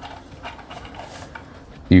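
Faint handling noise of a plastic toy trailer being turned over in the hands, with light rubbing and small clicks of plastic. A man's voice begins right at the end.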